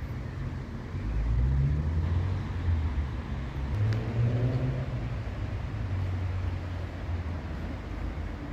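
Road traffic: a motor vehicle's low engine sound swells about a second in and eases off after about five seconds, then a steadier low hum continues.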